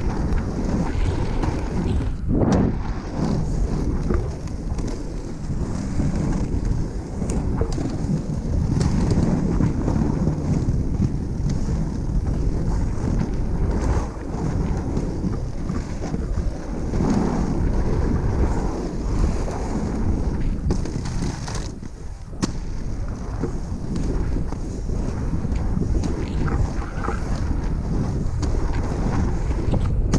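Wind buffeting a pole-mounted action-camera microphone over the steady rumble of three-wheel inline skates with 110 mm wheels rolling on asphalt, with an occasional short knock.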